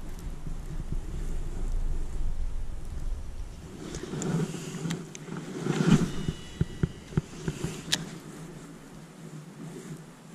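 Wind buffeting the microphone, then a cloth rustle of a jacket sleeve as a baitcasting rod is cast about four to six seconds in. A few light clicks follow, and a sharp click near eight seconds as the baitcasting reel is handled.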